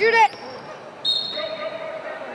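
Sounds of a basketball game in a gym: a shout from the stands, then about a second in a steady high whistle-like tone that fades after about half a second.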